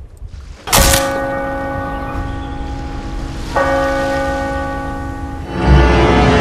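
A bell struck twice, about three seconds apart, each stroke ringing on with several steady tones, then a loud low surge of sound near the end: a dramatic bell sound effect on a film soundtrack.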